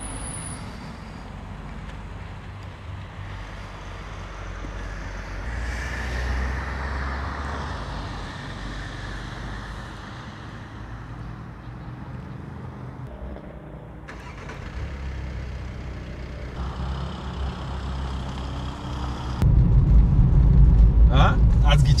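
Open-air ambience: a steady low rumble with a soft hiss that swells and fades. Near the end it cuts to the louder, steady road noise of a moving car heard from inside the cabin.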